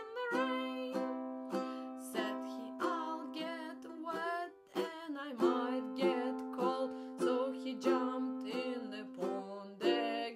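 Ukulele strummed in steady chords, about two strokes a second, with a woman singing a children's song over it. There is a brief drop in the strumming just before the middle.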